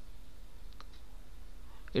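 Steady low background hum and hiss from the recording microphone, with one faint click a little under a second in.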